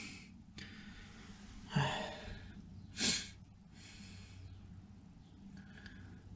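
A man's breathing close to the microphone: an exhale about two seconds in, a sharper sniff about three seconds in and a softer breath a second later, over a faint steady low hum.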